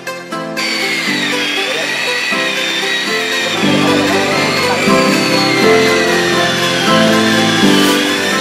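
Background music with a beat, and from about half a second in the high, steady whine of an electric rotary polisher spinning a foam pad against a plastic headlight lens, its pitch wavering slightly as the load on the pad changes.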